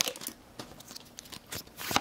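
Foil booster-pack wrapper crinkling and tearing as a Pokémon card pack is opened: a brief crinkle at the start, a quiet moment, then a louder papery rustle near the end as the cards are pulled out.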